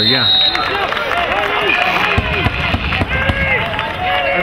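Several voices shouting over one another at a lacrosse game, from players, coaches and spectators, with a short, high referee's whistle blast right at the start.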